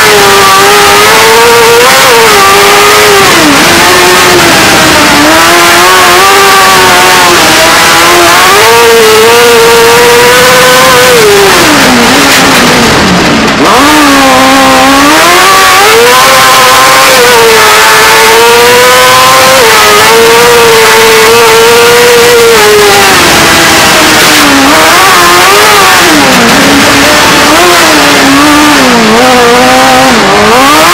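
Race car engine running hard at high revs, heard loud from inside the cockpit. Its pitch climbs through the gears and drops sharply when braking for corners, falling lowest about twelve seconds in and again near the end.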